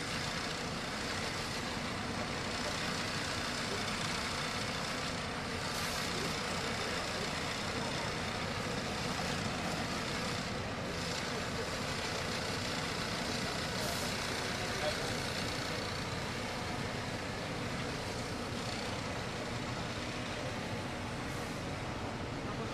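Large bus engine idling steadily at close range, with a few short hisses.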